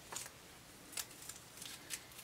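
Faint, crisp paper rustles and small ticks as a paper label is handled and slipped off a small mini-skein of gray yarn, in a few short scattered touches.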